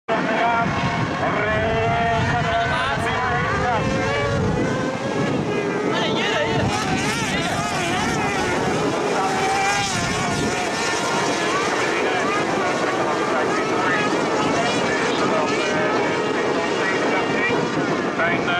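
Several junior autocross buggies racing on a dirt track, their engines revving up and down together in a continuous loud chorus, pitches rising and falling as drivers accelerate and lift.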